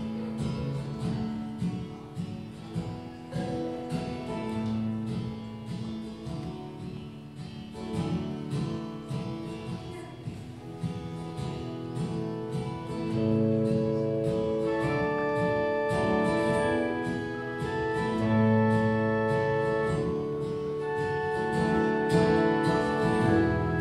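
Acoustic guitar playing an instrumental intro of picked and strummed notes, joined about halfway through by long, steady held chords from a pipe organ.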